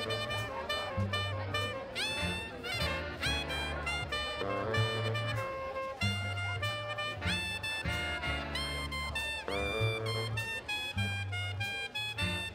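Blues band playing an instrumental passage: a saxophone lead whose notes scoop up into pitch, over a moving bass line and drums.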